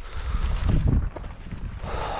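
Someone walking through tall grass: rustling and footfalls, with wind rumbling on the microphone. The rumble is strongest in the first second and eases off after.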